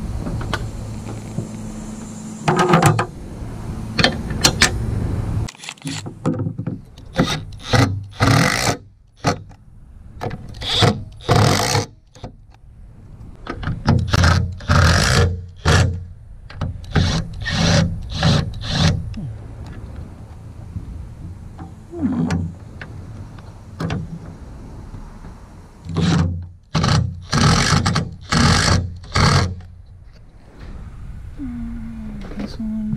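Cordless drill-driver run in many short trigger bursts, each under a second, in clusters, driving the fasteners of a roof-rail base into the truck roof.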